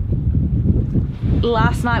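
Strong wind buffeting the microphone on a sailboat's bow: a heavy, unsteady low rumble. A voice starts speaking about one and a half seconds in.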